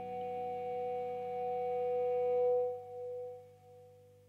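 A live band's sustained final chord: a few steady held notes that swell slightly, then fade away in the second half.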